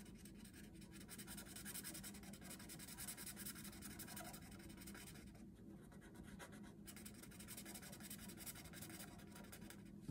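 Thin marker scribbling on paper, faint and rapid back-and-forth strokes filling in a shape with black ink.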